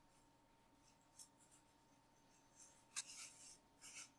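Near silence: room tone, with a few faint, brief rustles about a second in and again near the end.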